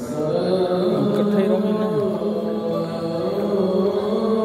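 A muezzin chanting the Islamic call to prayer over the mosque's loudspeakers: one male voice holding long, steady notes with a wavering melodic turn partway through.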